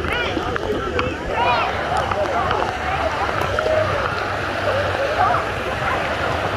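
Water sloshing and gurgling around a microphone dipping below the surface of a pool, with indistinct voices in the background.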